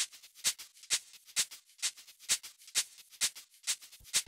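A sampled shaker loop playing on its own: a steady rhythm of short, hissy shakes, an accented stroke about twice a second with softer ones in between.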